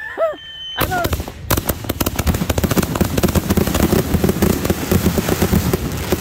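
Aerial fireworks going off in a dense, continuous barrage of rapid pops and crackle, starting about a second in.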